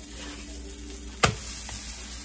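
Quesadilla sizzling on a hot electric griddle, with a single sharp click just over a second in.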